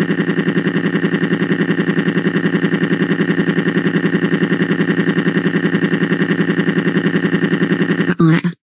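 Cartoon crying sound effect: one long, steady-pitched wail that pulses rapidly, about ten times a second.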